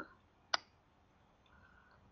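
A single computer mouse click about half a second in.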